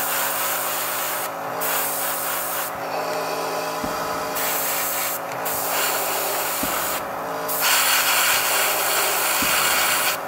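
Gravity-feed airbrush spraying paint in bursts: a loud hiss of air that breaks off and resumes about four times as the trigger is let go and pressed again, over a steady low hum.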